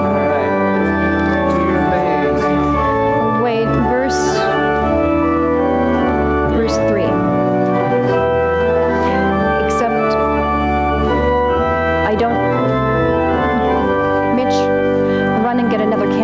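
Church organ playing a hymn tune in loud, sustained chords that change every second or two, the introduction to the closing hymn.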